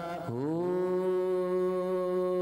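Male vocalist singing Punjabi devotional verse into a microphone. His voice dips low about a quarter second in, then slides up into one long held note over a steady low drone.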